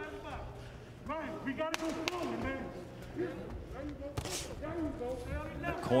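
Boxing cornermen shouting instructions from ringside, imploring their fighter to come forward. There are a couple of sharp thuds among the shouts.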